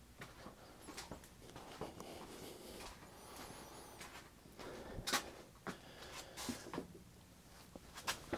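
Quiet basement room tone with scattered soft knocks and rustles of footsteps and clothing as a person walks about, the loudest about five seconds in, and a faint high squeak a little past three seconds.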